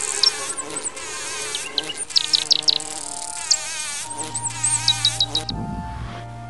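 A flying insect buzzing, its pitch wavering up and down, with short high chirps over it; the buzz cuts off about five and a half seconds in. Background music with steady notes comes in underneath near the end.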